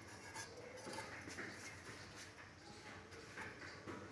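Faint light clicks and rubbing as a greased aluminium baking container is handled and tilted.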